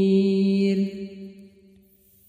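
Quranic recitation: the reciter's voice holds one long, steady note on the last syllable of a verse, then fades away about a second in.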